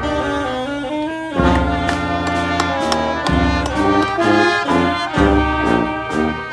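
Brass band with saxophone playing a slow tune, melody notes changing every second or so over deep bass notes.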